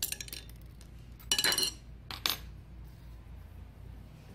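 Small steel screws and a screwdriver clinking on the metal of an industrial sewing machine as the feed dog screws are taken out and the screwdriver is set down. A few light clicks near the start, a short ringing clink about a second and a half in, and another just after two seconds.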